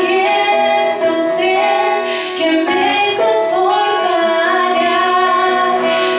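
A woman singing a slow Spanish-language worship song into a microphone with long held notes, accompanied by a strummed acoustic guitar.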